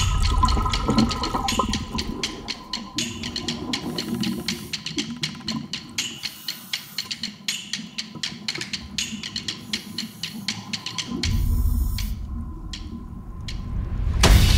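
Underwater ambience: water rushing and bubbling with dense, irregular crackling clicks, over a soft music bed. A low bubbling rush swells about eleven seconds in and then fades.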